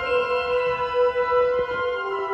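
Concert band of brass and woodwinds playing a soft, sustained passage: one long held note with little bass underneath.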